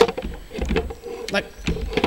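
A locked door being pushed and rattled against its lock, giving a few short knocks over a low rumble of handling noise on the microphone.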